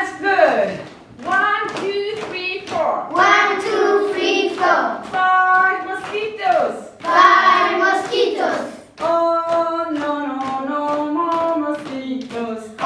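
A group of children singing a rhythmic chant together with a woman, with hand claps keeping time. Some notes are held, and the voices break off briefly about nine seconds in.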